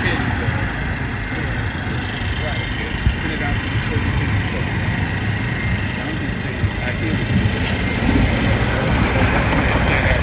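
Steady road traffic noise, with people's voices talking over it and a single sharp click about three seconds in.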